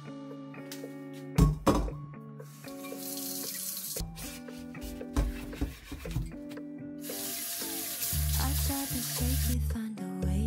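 Tap water running into a stainless steel kitchen sink in two stretches, briefly about three seconds in and again from about seven seconds until shortly before the end, while a stainless frying pan is washed. There is a sharp knock about a second and a half in, and soft background music plays throughout.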